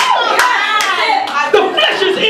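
A man preaching in a loud, raised voice over rhythmic hand clapping, about two or three claps a second.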